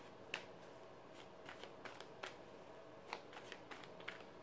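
A tarot deck being shuffled softly: scattered faint clicks and flicks of cards, a couple a second.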